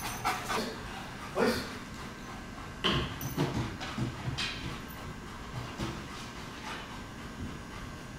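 A Briard and its handler moving about on rubber matting as the dog steps up onto a low box: irregular soft thumps and scuffs, about one every half-second to second.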